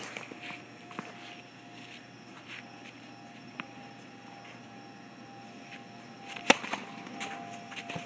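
Tennis serve: one sharp pop of the racket strings striking the ball about six and a half seconds in, followed by a few fainter knocks as the ball lands and bounces on. Earlier come two faint isolated knocks, the ball being bounced on the hard court before the serve.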